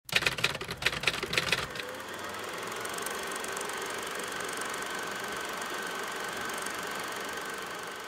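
Typewriter keys clacking rapidly for about the first two seconds, then a steady hiss with a faint thin hum.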